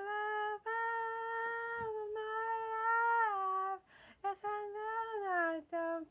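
A woman singing unaccompanied: a short note, then a long high note held for about three seconds, then after a brief break a few shorter notes, with the pitch sliding down near the end.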